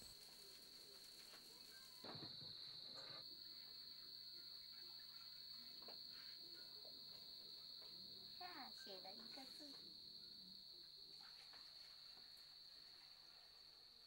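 Near silence with a faint, steady, high-pitched insect trill, a little stronger from about two seconds in.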